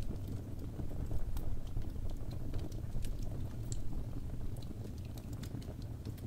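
Wood fire crackling in a fireplace: irregular sharp pops and snaps over a steady low rumble of the burning fire.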